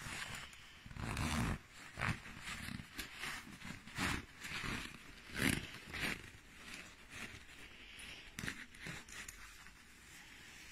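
Shiny nylon shell of an overstuffed down puffer jacket rustling and crinkling as a hand rubs and squeezes it, in a run of irregular swishes that grow softer in the second half.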